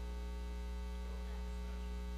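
Steady low electrical mains hum with a faint buzz above it, carried through the church's microphone and sound system.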